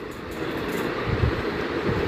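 Steady outdoor noise of road traffic, with a few low rumbles starting about a second in.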